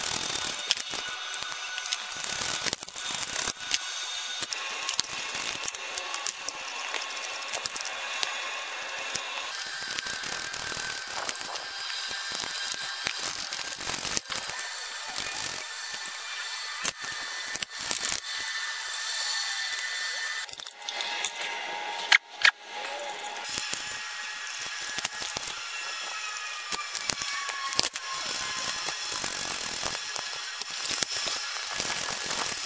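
Hand socket ratchet clicking in repeated runs as the oil pan bolts are backed out, with one sharp knock about two-thirds of the way through.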